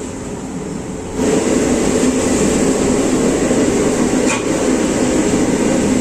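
Steady roar of a gas burner under a large aluminium cooking pot, stepping up louder about a second in.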